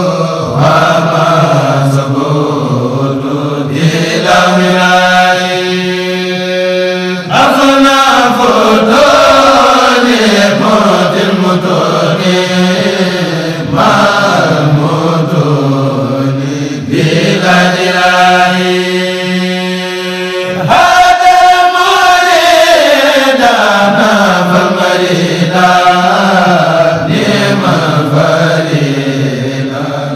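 Mouride religious chanting in the khassaid style: voices chanting in long melodic phrases with drawn-out held notes over a steady low tone. The phrase breaks off and starts again about 7 seconds in and again about 21 seconds in.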